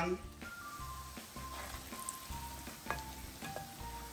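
Small pieces of chin chin dough deep-frying in a pan of hot oil, a steady sizzle, as they are stirred with a slotted spoon. Soft background music with a steady beat plays over it.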